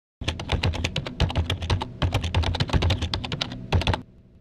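Rapid keyboard typing clicks, about ten a second with a low thud under many of them, used as the sound effect of a news-site intro. They pause briefly about halfway through and stop just before the end.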